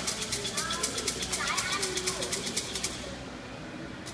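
Thai fortune sticks (siam si) rattling in their cylinder as it is shaken fast and evenly, about ten shakes a second. The shaking is meant to make one numbered stick fall out, and it stops about three seconds in.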